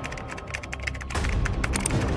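Computer keyboard typing sound effect, a rapid run of key clicks, over background music; the clicks get louder about a second in.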